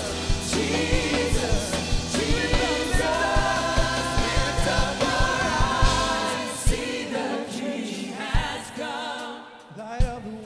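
Gospel worship team singing together with a full band. About two-thirds of the way in, the drums and bass drop out and the voices carry on almost alone.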